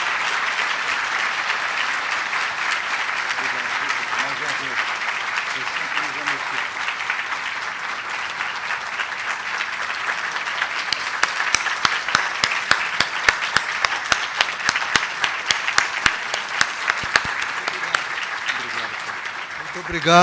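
Sustained applause from a large audience. In the second half, sharper single claps stand out over the steady sound.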